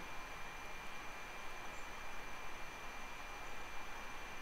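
Quiet, steady background hiss of room tone with a faint, thin high-pitched tone running through it. No distinct handling sounds stand out.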